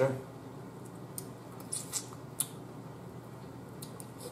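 Cooked crab shell being cracked and picked apart by hand: a few short, faint crackles and clicks between about one and two and a half seconds in.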